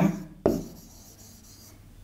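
Marker pen writing on a whiteboard: a short tap as the tip meets the board about half a second in, then a faint scratchy rubbing as a word is written.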